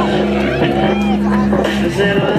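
Loud pop-rock runway music with a sung vocal gliding over a long held bass note.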